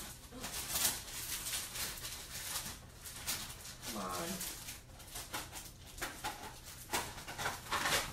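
Rummaging and handling noises: a scatter of light clicks, knocks and rustles as objects are moved about while searching for a small tray.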